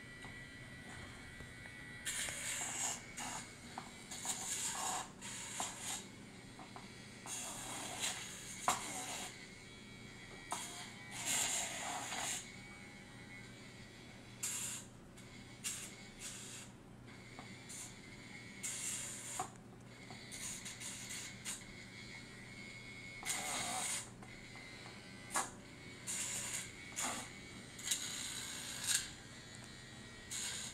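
Pedi-Paws battery-powered rotary nail file running with a steady low hum, with repeated short rasping bursts as the spinning file is pressed against a dog's toenails.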